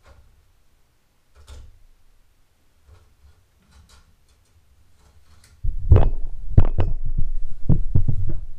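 A few faint clicks, then from about five and a half seconds in a sudden loud low rumble with several sharp knocks: handling noise from the camera and microphone being moved and set down close to the floor jack.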